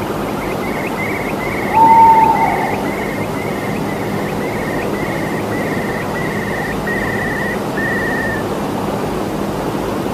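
A steady hiss of background noise under a repeated high-pitched animal call: short notes about two a second for some eight seconds, slowly falling in pitch. About two seconds in, a single louder, lower whistle-like note sounds and falls away.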